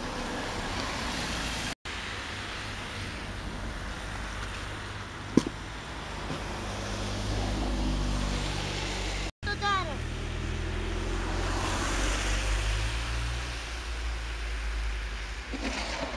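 Street ambience of car traffic on a snowy road: a steady low rumble and hiss, with one sharp knock about five seconds in. The sound drops out for an instant twice at edit cuts.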